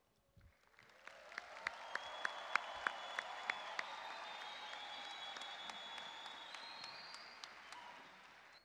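Crowd cheering and applauding, starting about a second in, with sharp individual claps standing out early and a long, steady high tone running through the cheering; it fades near the end.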